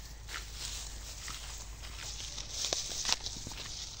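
Footsteps crunching and rustling through dry straw and stubble in an irregular walking rhythm, with a few sharper crackles a little before the end.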